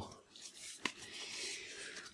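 Match Attax trading cards handled in the hands: a sharp click a little under a second in as a card is flicked off the stack, then faint card sliding over card.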